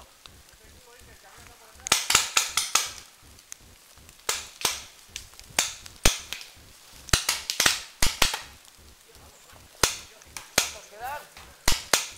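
Paintball markers firing: a quick burst of about six shots about two seconds in, then single shots and short pairs scattered through the rest.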